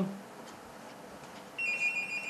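A telephone ringing: after a moment of quiet room tone, a steady, high-pitched ring starts near the end.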